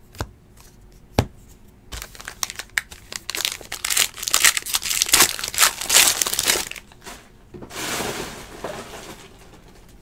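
Two light knocks, then the clear plastic wrapper of a trading-card pack crinkling and tearing for several seconds as the pack is ripped open, ending in a smoother rustle.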